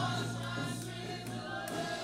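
Live worship music: a band with guitars playing while voices sing together, with a strong low bass note held until about one and a half seconds in.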